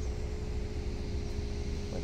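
Steady low rumble with a constant hum from an idling vehicle.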